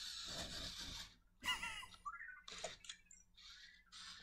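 A breathy sigh in the first second, then an Anki Vector robot turning on its treads with faint motor whirring and a few short, high, bending electronic chirps.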